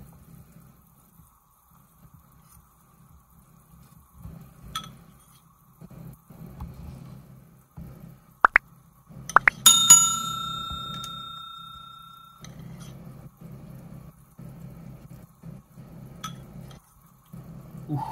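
A metal spoon knocks a few times on the rim of a stainless steel pot as semolina dumplings are dropped into the soup. The last and loudest strike, about ten seconds in, leaves a bell-like ring that fades over a couple of seconds. A faint low hum runs underneath.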